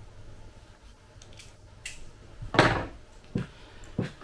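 Hand-handling noises from the metal body of a 1:10 RC Hummer H1 as its rear is being opened: a few light clicks and one louder short clatter about two and a half seconds in.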